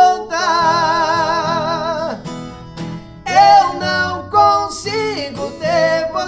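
Two male voices singing a sertanejo ballad in harmony over a strummed acoustic guitar. A long note held with vibrato runs from about half a second to two seconds in, followed by shorter sung phrases.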